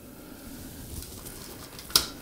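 Quiet room background, then one sharp click near the end as a hand knocks the plastic receiver box at the ceiling fan's mount.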